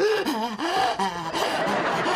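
Laughter, with breathy, gasping voices early on and a more even spread of laughter after about a second.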